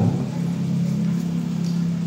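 A steady low hum of a couple of held tones, with no words over it.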